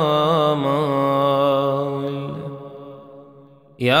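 A man's voice chanting an Arabic Ramadan supplication (du'a), drawing out the last syllable of a phrase on a wavering pitch that then steadies and fades away. After a short silence the next chanted phrase begins right at the end.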